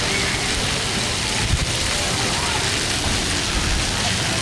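Splash-pad fountain jets spraying water that patters down onto the wet deck: a steady rain-like hiss of falling water.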